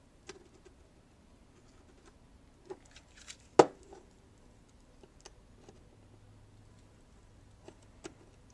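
Light, scattered clicks and taps of a soldering iron tip and a small plastic device being handled on a desk during soldering, with one sharp knock about three and a half seconds in as the device is turned and stood on its edge.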